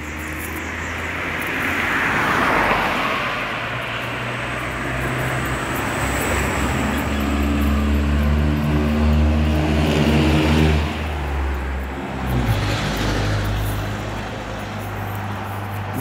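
Cars passing close by on a street, their tyre noise and engine hum swelling and fading. One passes about two to three seconds in, and a louder one with a steady engine note goes by around eight to eleven seconds.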